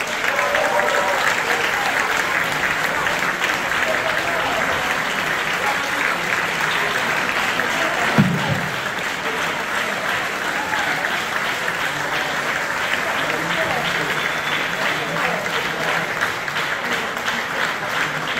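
An audience applauding steadily, with voices calling out over the clapping. A brief louder sound stands out about eight seconds in.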